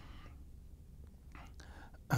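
A pause in speech: quiet room tone with a low steady hum, and a soft breath near the end.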